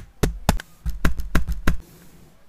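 Transparent plastic set squares and ruler being handled in a metal geometry box: about eight sharp clicks and taps of plastic against plastic and the tin, ending a little before the two seconds are up.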